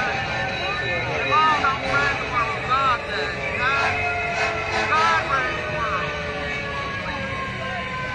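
A person's voice wailing in short, wordless rising-and-falling cries over the steady drone of a vehicle engine. In the second half the engine's pitch falls slowly.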